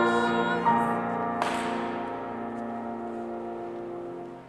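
A congregation and choir singing a hymn with instrumental accompaniment, holding a final chord that slowly fades. A brief hiss about a second and a half in.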